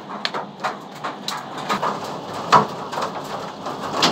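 Hailstones and heavy rain falling on pavement and parked cars: a steady hiss with many small, irregular impacts.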